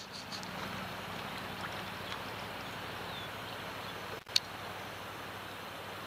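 Steady wash of moving river water and wind around a drifting canoe, with a brief break and a single sharp click just after four seconds in.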